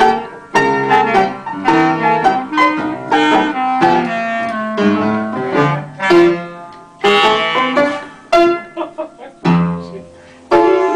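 Piano and clarinet playing a tune together, the piano's chords the most prominent. The playing thins to a few short, separate notes near the end.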